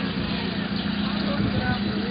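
A vehicle engine running steadily, a constant low hum under road and traffic noise.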